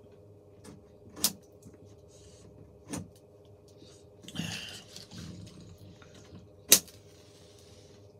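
Pipe and lighter handling: a few small clicks and a breathy draw, then a sharp lighter click about three-quarters of the way through, followed by a faint flame hiss as a tobacco pipe is lit.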